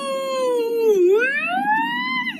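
A woman drawing out one long vowel in a mock whale-call imitation. The pitch sags, dips sharply about a second in, then climbs high near the end, like a siren.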